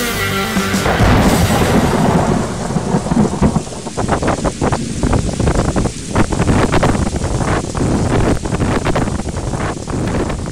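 Storm sound: a loud thunderclap about a second in, then rumbling thunder under dense crackling rain, as the music before it fades away.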